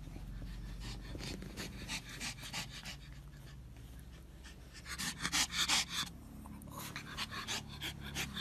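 Small fluffy dog panting in quick, short breaths, strongest a little past halfway.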